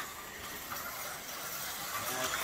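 Vintage 1970 slot car running around its plastic track, its small electric motor making a steady whir.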